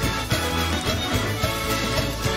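Instrumental music with a steady beat and a sustained bass line.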